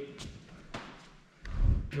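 A couple of faint taps, then a loud, low, dull thump about one and a half seconds in.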